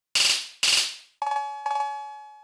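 Roland TR-6S drum machine playing single drum hits about twice a second: two short noisy hits, then two ringing, bell-like metallic tones that die away slowly.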